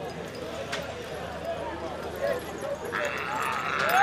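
Hoofbeats of pairs of light draught horses, working forest horses, trotting on a dirt track as they are led past, under the chatter of a crowd of spectators that grows louder near the end.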